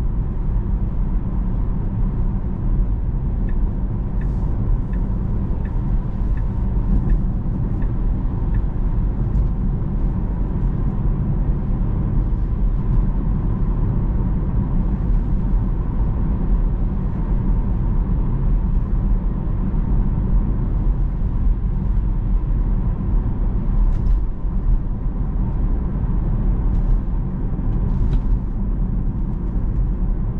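Steady low road and tyre rumble inside the cabin of a Tesla electric car driving along city streets. A few seconds in, a faint regular ticking runs for several seconds, about two ticks a second.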